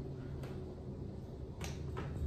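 Elevator keypad floor button being pressed: two faint, short clicks, about half a second in and again near the end, over a steady low hum.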